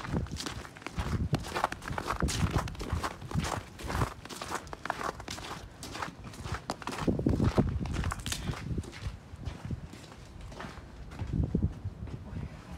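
Footsteps walking over thinly snow-covered ground, with wind buffeting the microphone.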